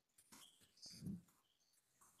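Very quiet room with faint, irregular keyboard-typing clicks as text is entered in a document. There is one brief, low sound about a second in.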